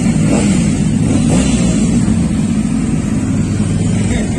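Motorcycle engines running as the bikes ride slowly past, a steady low engine sound with small changes in throttle.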